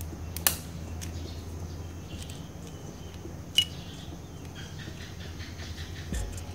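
Side cutters snapping through small metal parts on a mobile phone circuit board: two sharp snaps, about half a second in and again about three and a half seconds in, with a few faint ticks between them. A steady low hum runs underneath.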